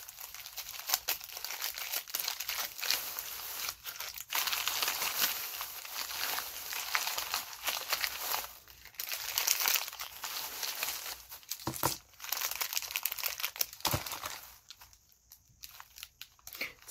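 Snack packaging crinkling and rustling as it is handled, a dense crackle of small clicks that falls quiet near the end.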